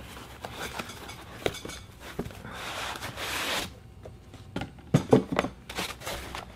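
Cardboard packaging being handled as an inner box is drawn out of a CPU cooler's retail box: scattered rustles and clicks, a longer scraping rustle of about a second in the middle, and a few sharp knocks near the end.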